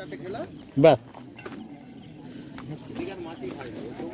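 Background murmur of several people talking, with one brief loud vocal call or exclamation about a second in.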